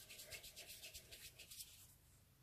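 Faint, rapid rubbing strokes, several a second, stopping near the end: a piece of modelling clay being rolled into a ball between the palms.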